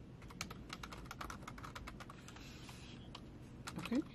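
Typing on a computer keyboard: a quick run of light key clicks that starts shortly after the beginning, thins out after about two seconds, and ends with a few last keystrokes.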